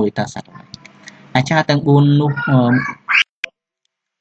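A voice speaking Khmer, reading a text aloud in short phrases with pauses, followed by a few short clicks near the end.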